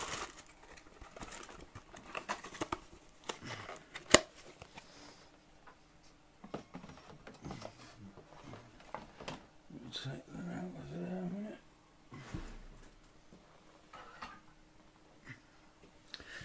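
Handling of a cardboard model-kit box and its bagged plastic parts on a desk: light rustling and taps, with one sharp click about four seconds in. A brief muffled vocal sound comes around ten seconds in.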